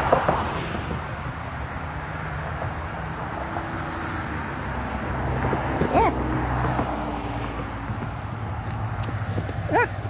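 Steady outdoor background of road traffic, a low engine hum under a rushing noise, swelling a little in the middle. A brief voice-like sound breaks in about six seconds in.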